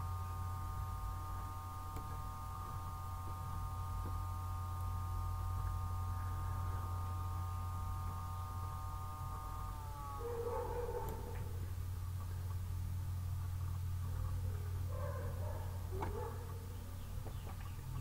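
Steady low electrical hum, with a fainter higher buzz that slides down in pitch and stops about halfway through, followed by a few faint, brief sounds.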